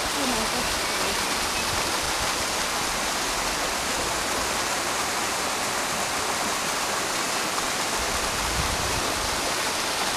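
Small mountain stream cascading over rock ledges as a waterfall: a steady, even rush of falling water.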